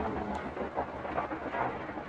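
Low, uneven rumbling noise.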